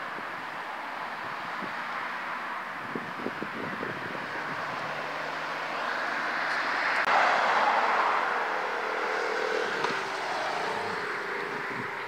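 Road traffic: cars moving round a roundabout, a steady noise of engines and tyres. It swells as a car passes about seven seconds in, then fades.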